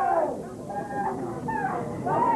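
Several people shouting and calling out over one another, with high, wavering pitches, at a wrestling match.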